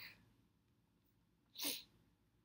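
A woman's single short, sharp breath about a second and a half in, between stretches of near silence.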